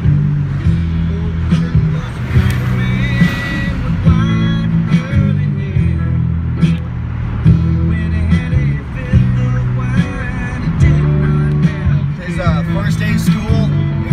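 Music with singing, playing loud on a car stereo inside a moving pickup's cab.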